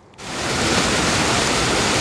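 Irrigation water rushing and churning down a concrete canal: a steady, loud rush of running water that comes in about a quarter second in.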